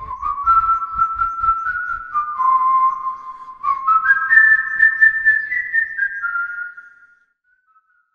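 A short closing jingle: a whistled melody of held notes that steps higher in its second phrase, over a soft low beat, fading out about seven seconds in.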